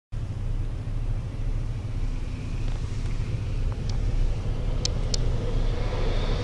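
Steady low rumble, with a few faint sharp ticks about five seconds in.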